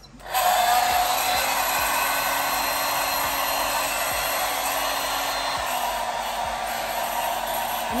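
Handheld hair dryer switched on a moment in, then running steadily on its warm setting, loud and even, a sound likened to a maize mill.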